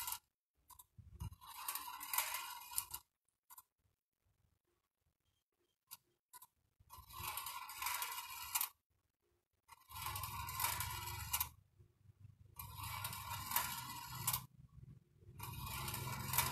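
Balls of a homemade wire-track marble run rattling and scraping as they roll down the bent-wire rails and are lifted by a motor-turned coil spiral, in bursts of a second or two that repeat every few seconds. A low hum joins about ten seconds in.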